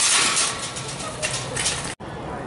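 Wire shopping cart loaded with steel propane cylinders rolling over concrete pavement, giving a steady, noisy rolling rattle. The sound cuts off abruptly near the end.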